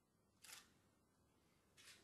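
Faint shutter clicks of a DSLR camera: two shots, the first about half a second in and the second near the end.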